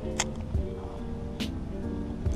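Old-school hip-hop instrumental beat laid over the footage: held keyboard notes over a kick drum, with sharp snare or hi-hat hits.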